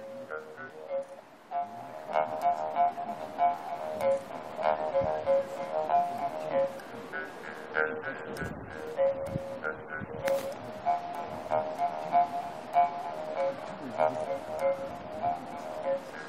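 Qiang kouxian, a wooden mouth harp, played by pulling its string: a buzzing drone on one steady pitch whose overtones change with each quick, rhythmic pluck as the player shapes her mouth. It grows louder after about a second and a half.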